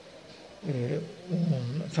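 A man's voice making two drawn-out wordless hesitation sounds, the pitch dipping and rising in each, before speech resumes at the end.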